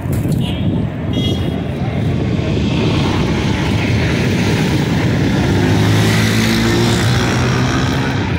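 Street traffic noise with a motor vehicle engine running close by. A steady engine hum comes in and grows louder in the second half.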